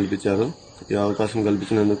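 A man speaking in short phrases, with a brief pause about half a second in.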